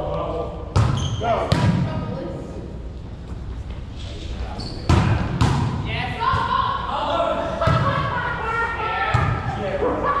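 A volleyball being struck again and again during a rally: about six sharp smacks of hands and forearms on the ball, echoing in a gym hall, with players' shouts in between.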